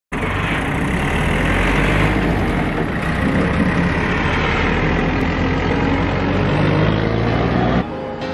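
Engine of a small flatbed truck driving past, louder for the first couple of seconds, then a steady low engine rumble that goes on until it cuts off abruptly near the end.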